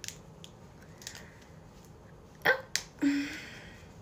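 Faint rustle of fingers handling a braid while a small hair elastic is put on its end, with two sharp clicks about two and a half seconds in, then a brief spoken 'yeah'.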